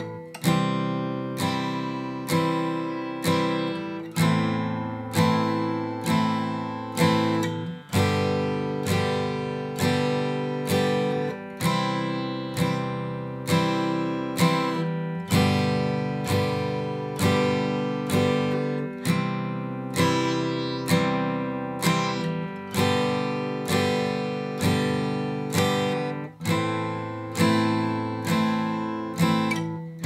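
Guitar strummed in single downstrokes at a steady moderate tempo, four strums on each chord. It works through a practice progression of C, A minor and G chords, changing chord every few seconds.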